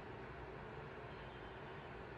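Quiet room tone: a faint, steady hiss with a low hum underneath, with no distinct events.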